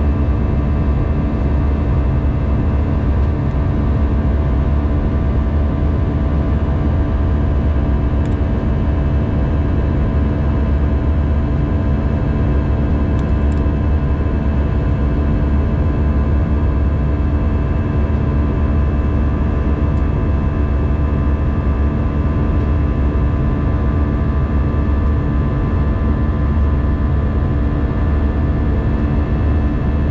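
Steady cabin noise inside an Airbus A319 airliner in flight: a constant deep rumble of jet engines and airflow, with several steady hums held throughout.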